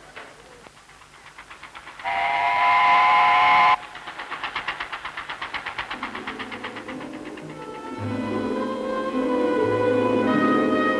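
A single steam whistle blast on several pitches, nearly two seconds long, a couple of seconds in, followed by the fast even chugging of a small boat engine, about six beats a second. Orchestral music comes in over the chugging in the second half.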